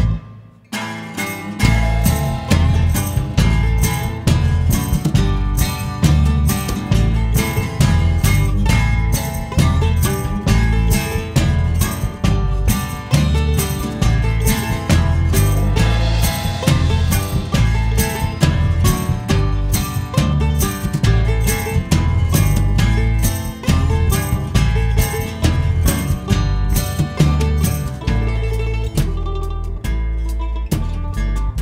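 Live country band playing without singing: acoustic guitar, mandolin, electric bass and drum kit over a steady beat. The music drops out for a moment at the very start, then the band comes back in.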